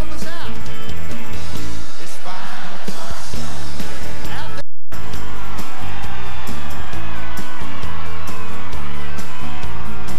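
Live band music with a singer and acoustic guitar, and some crowd whoops over it. The sound cuts out completely for a split second about halfway through.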